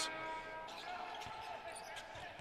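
Faint basketball game-floor sound: a basketball bouncing on a hardwood court a few times as dull thumps, with light arena room noise.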